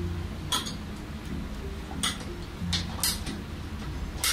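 Light handling of plastic PVC pipe and a pipe cutter: about five short, sharp clicks and taps spread out, over a low steady hum.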